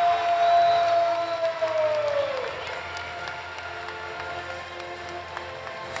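Ring announcer drawing out the winner's name in one long held call that falls in pitch and fades about two and a half seconds in, over crowd cheering and applause.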